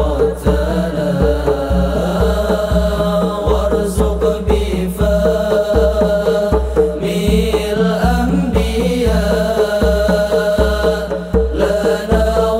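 Sholawat: a group of men singing an Arabic devotional chant together, backed by hand-played rebana frame drums and a steady pattern of deep drum beats.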